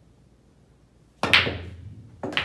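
A pool shot about a second in: the cue strikes the cue ball and the balls clack sharply together, with a couple of quick follow-up clicks and a short ringing tail.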